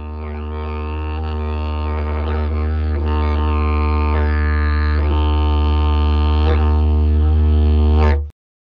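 A didgeridoo playing one continuous low drone, slowly growing louder, with its upper overtones shifting a few times.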